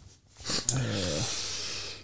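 A man's long voiced exhale, a low breathy groan of about a second and a half whose pitch sinks slightly as it fades.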